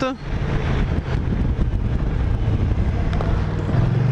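Kymco AK550 maxi-scooter's 550 cc parallel-twin engine running at a steady cruise, with wind noise, its engine note growing stronger near the end.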